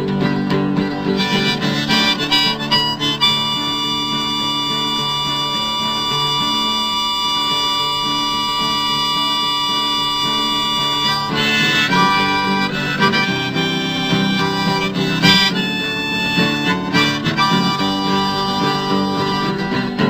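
Harmonica solo over strummed acoustic guitar in a folk song's instrumental break. The harmonica holds one long chord for several seconds in the middle, then moves through shorter phrases.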